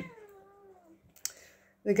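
A faint, high vocal sound that dips and rises in pitch for under a second, followed by a single short click.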